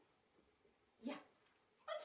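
A small white terrier, a West Highland white terrier, gives one short bark about a second in, in excitement during trick training.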